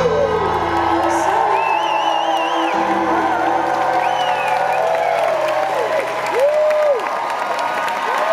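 A concert crowd cheering, whooping and applauding as a live pop song ends. The last held notes of the band die away in the first few seconds, and high whoops and shouts rise out of the cheering.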